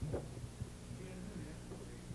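A low steady electrical hum in a pause after the song, with a faint short chuckle from the singer just after the start.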